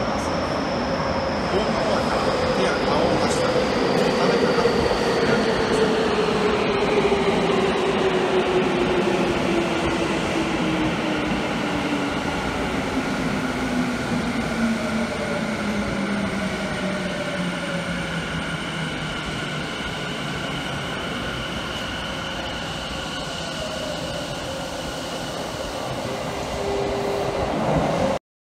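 Subway train braking into the station, its electric motor whine gliding steadily down in pitch over about eighteen seconds over the running noise of wheels on rail. In the last couple of seconds the noise grows louder as another train comes in.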